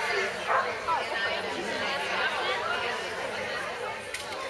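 Indistinct background chatter of several people talking at once.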